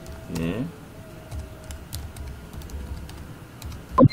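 Typing on a computer keyboard: a series of light, irregular key clicks as text is entered. About half a second in there is a brief voiced sound from a person, falling in pitch.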